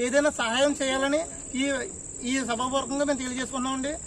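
A man speaking Telugu, with a steady high-pitched drone of crickets behind him.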